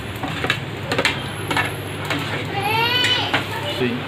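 A few light metallic clinks of a steel ladle against a plate and an iron kadhai, over a steady low hum. About three seconds in, a child's high-pitched voice calls out once.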